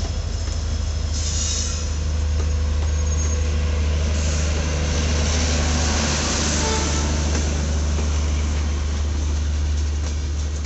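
Coaches of an Indian Railways express train rolling past close by: a loud, steady low rumble of wheels on rail, with high-pitched wheel squeal swelling about a second in and again from about four to seven seconds.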